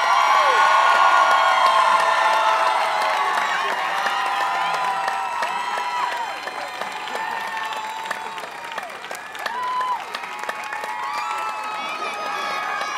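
A crowd cheering, shouting and applauding together. It is loudest in the first couple of seconds, then slowly dies down, with a brief rise again near the end.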